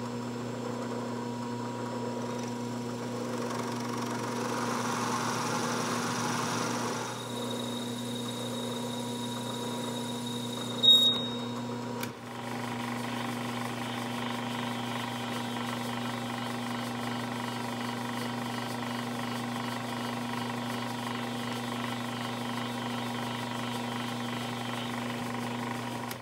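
Bridgeport milling machine spindle running with a steady hum while cutting into a brass hammer head, first drilling a blind 5/8-inch bore and then reaming it. The cutting adds a rushing noise for a few seconds early on, and a short high squeal comes about eleven seconds in. The spindle then runs on steadily.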